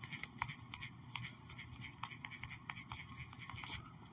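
Quick clicking taps of a finger typing a long string of digits on a smartphone's on-screen keyboard, several taps a second, stopping just before the end.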